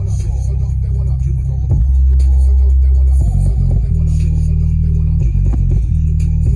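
JBL Boombox 2 portable speaker playing a bass-only music track at full volume on mains power: long deep bass notes that change pitch every second or so, with the passive radiator pumping hard.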